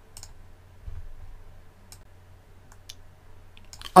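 A few scattered single computer clicks spread over a few seconds, with a soft low thump about a second in, over a low steady hum.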